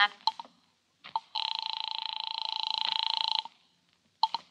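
A telephone ringing once, for about two seconds with a fast flutter, as the call goes through. A couple of clicks on the line come before it.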